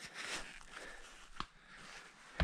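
Climbing skins sliding uphill through snow with a soft swish early on, then a single sharp click near the middle: the sound of skinning on a backcountry tour.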